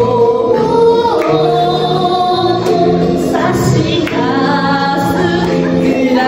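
A woman singing into a microphone over instrumental accompaniment, holding long notes.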